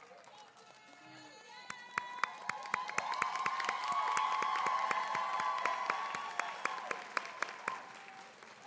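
Audience applause in an auditorium: scattered claps start about two seconds in, build into full applause, then thin out near the end.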